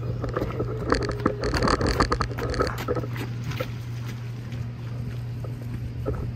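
A steady low machine hum, with a burst of rattling and clanking in the first three seconds.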